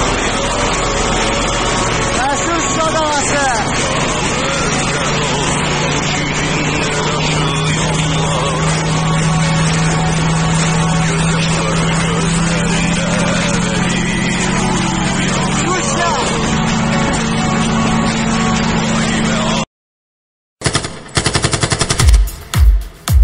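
Vehicle driving, with engine and road noise heard from inside the cabin and voices mixed in; the engine note rises a little about halfway. It cuts off abruptly near the end, and after a brief silence comes a fast rattle of sharp cracks.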